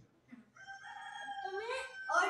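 A rooster-like crowing call: one long held note that starts about half a second in.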